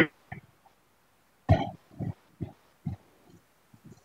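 Short, broken fragments of a man's voice coming through a video call, cut off by silent dropouts between them, as on a poor connection.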